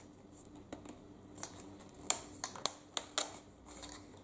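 Scattered light clicks and knocks of plastic and metal parts being handled and fitted together: the metal extension tube being pushed into the nozzle of a handheld vacuum cleaner. The vacuum's motor is not running.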